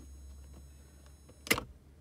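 A single sharp click about one and a half seconds in as the car's 12 V fibre-optic LED strip is switched off, over a faint steady hum; a faint high-pitched whine stops with the click.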